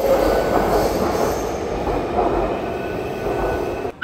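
Taipei MRT train running through the station: a loud, steady rumble of wheels and motors with a faint high steady tone over it.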